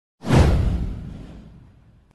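A whoosh sound effect with a deep rumble under it. It comes in sharply about a quarter second in, sweeps downward and fades away over about a second and a half.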